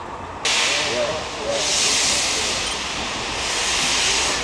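LMS Princess Royal class 4-6-2 steam locomotive 6201 Princess Elizabeth with its cylinder drain cocks open, blowing steam in a loud hiss. The hiss cuts in abruptly about half a second in, after a low steady rumble, and then swells and eases in waves.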